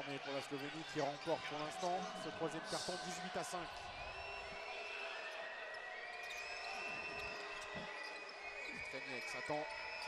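A basketball being dribbled on a hardwood court amid arena crowd noise. Voices are heard in the first few seconds, and from about four seconds in, long steady high tones hang over the crowd.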